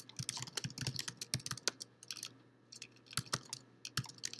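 Typing on a computer keyboard: a quick run of keystrokes over the first couple of seconds, a short pause, then a few more keystrokes near the end.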